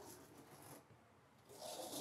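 Fabric privacy curtain being drawn along its ceiling track: a faint rustle and slide, with a short, louder swish about one and a half seconds in.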